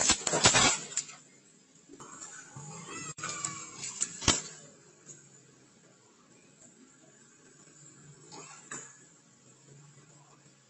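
A pickup truck backing into a wooden fence: loud cracking and banging of wood in the first second, then a couple more sharp knocks about four seconds in.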